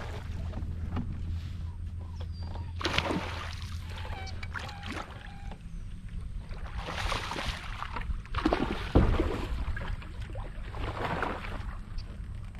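Water rushing and splashing along the hull of a pedal-driven plastic fishing kayak under way, coming in surges every few seconds over a steady low rumble. There is a sharp knock about nine seconds in.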